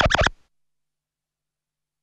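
A brief edited-in transition sound effect with quickly sliding pitches, lasting under half a second, then dead digital silence.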